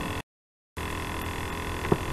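Steady electrical mains hum with hiss underneath, broken about a quarter second in by a half-second dropout to dead silence. A faint click comes near the end.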